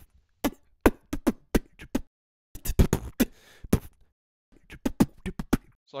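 A recorded percussion part played back: sharp, dry hits in three quick, irregular clusters separated by short pauses.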